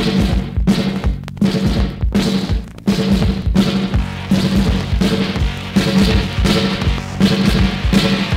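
Music: the opening of a 1983 UK DIY punk single, a band with the drum kit to the fore playing a repeating low, driving riff.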